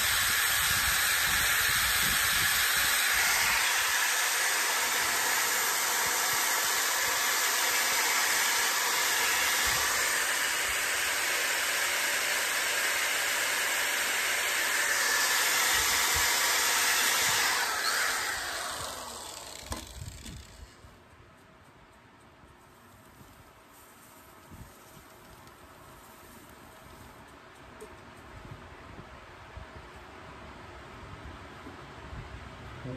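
Hand-held power sanding disc whirring against a wooden bowl spinning on a wood lathe, a steady hiss. About eighteen seconds in the sanding stops and the motor whine falls away over two or three seconds, leaving only faint background noise.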